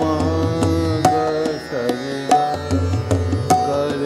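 Hindustani classical music: a male voice sings a gliding melodic line with harmonium, over a tanpura drone, while a tabla sounds a sharp stroke about every second and a bit.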